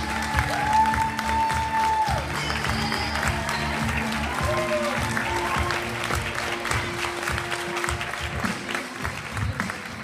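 Crowd applause, many hands clapping, over music playing. The applause eases off a little toward the end.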